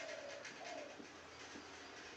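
A bird calling faintly, two short notes in the first second, over quiet room hiss.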